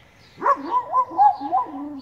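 A Weimaraner "talking": one drawn-out vocal moan that wavers up and down in pitch. It starts about half a second in and runs on, sliding lower near the end.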